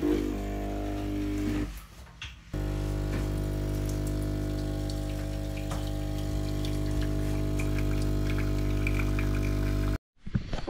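DeLonghi espresso machine's vibration pump humming steadily as it pushes water through the portafilter, pulling a shot of espresso into a mug. The hum drops out a little under two seconds in, comes back about half a second later, and then runs steadily until it cuts off at the end.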